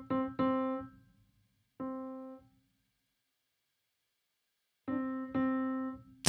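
UVI Modern U sampled upright piano with the sordino felt mute engaged, one note near middle C struck five times: three quick strikes at the start, one at about two seconds, a silent gap, then two more near the end, each ringing briefly and fading. The timbre-shift setting makes the same key trigger a different sample.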